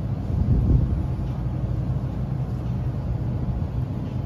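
Steady low rumble of store background noise, with a louder bump a little under a second in.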